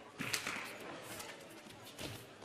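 Badminton rally: a sharp racket strike on the shuttlecock about a third of a second in, followed by smaller clicks and players' footwork on the court.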